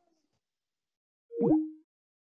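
Skype's call-ended tone: one short electronic bloop, about a second and a half in, stepping down from a higher note to a lower one.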